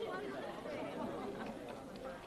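Indistinct chatter of several voices talking at once, no single voice clear, easing down near the end.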